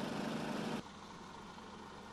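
Faint, steady rumble of idling lorry engines, dropping quieter a little under a second in.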